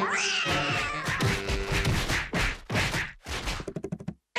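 A cartoon cat character's voice: a meow-like cry that rises sharply and then falls away slowly. It is followed by a string of sharp noisy hits, and near the end a fast run of clicks that speeds up and then stops suddenly.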